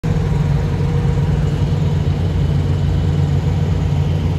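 Diesel semi-truck engine idling, a steady low sound with no change in pitch.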